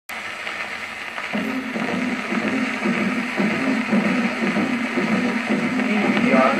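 Surface hiss and crackle of a 1934 Victor 78 rpm shellac record playing on a turntable. About a second and a half in, the accompanying band's samba introduction starts under the noise, low notes in a steady rhythm, growing louder.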